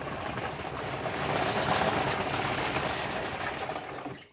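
Telehandler's diesel engine running steadily, swelling a little in the middle and fading out at the end.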